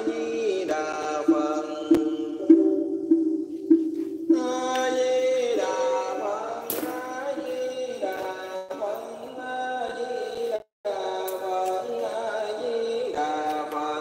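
Music: a chanted melody of long held notes that step from pitch to pitch, which cuts out for a moment near eleven seconds.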